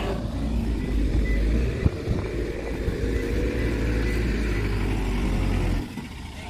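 Loaded tip truck's engine running steadily as the truck drives slowly off, a low rumble that cuts off suddenly near the end.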